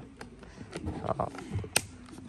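Chain brake lever on a STIHL 192T top-handle chainsaw, engine off, worked by hand: a couple of light plastic clicks and one sharp click near the end as the brake snaps over.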